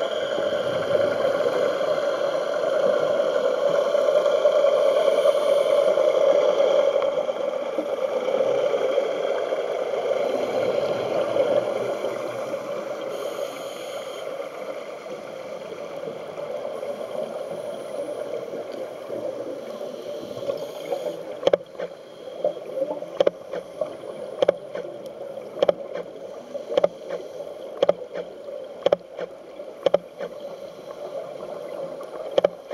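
A boat's motor heard underwater, a steady hum with a few fixed tones, fading away over the first dozen seconds. In the second half, scattered sharp clicks come at irregular intervals over a quieter underwater hiss.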